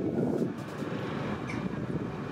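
Steady wind noise on the microphone over a low background rumble.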